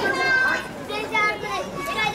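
Many young children's voices chattering and calling out at once, overlapping in a high-pitched babble.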